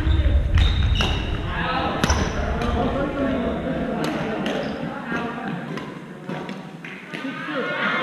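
Badminton rackets striking shuttlecocks, sharp cracks roughly once a second, some from the near court and some from others, ringing in a large echoing gym. Indistinct players' voices run underneath.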